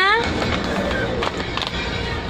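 Paper shopping bag and cardboard packaging rustling and scraping as a boxed camera is pulled out, over steady background music.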